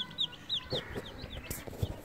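Baby chicks peeping: a run of short, high, downward-sliding peeps, several a second, with some low rustling underneath.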